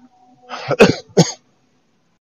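A man coughing to clear his throat: two short coughs in quick succession, a little under a second in.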